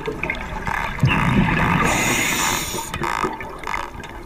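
Underwater sound of a scuba diver breathing through a regulator: a hissing breath with bubbling, loudest from about one second in until nearly three seconds.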